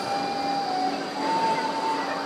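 A Melbourne tram passing, with a whining tone from the tram that steps up in pitch and grows louder a little past halfway, over a steady high whine and rolling noise.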